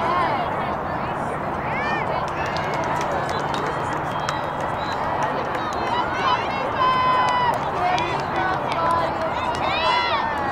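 Indistinct shouts and calls from lacrosse players and sideline spectators over a steady outdoor hiss, with one long held call about seven seconds in and a few sharp clicks.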